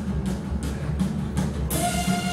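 Live rock band playing an instrumental passage carried by heavy drums and bass, with no vocals. Shortly before the end a bright high wash and several held tones come in over the drums.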